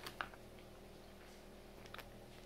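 Soft clicks from a mouth chewing a bite of food, two near the start, over a faint steady room hum.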